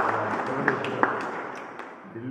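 A small group applauding: a dense haze of hand claps with a few sharp, louder claps, dying away toward the end.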